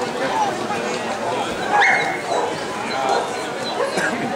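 A dog gives one short, high-pitched yelp about two seconds in, over the steady chatter of a crowd in a large hall.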